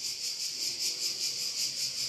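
A steady high-pitched hiss with a fast, even pulsing, like insect chirring.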